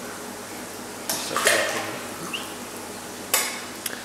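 Koi splashing and slurping at the water surface as they take pieces of mussel from a hand, in a few short, sharp bursts: one about a second in and two more near the end.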